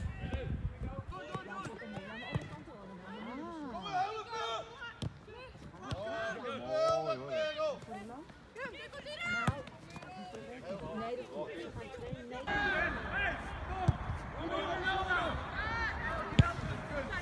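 Soccer match sound: players' and spectators' voices calling and shouting across the pitch, with a few sharp thuds of a ball being kicked.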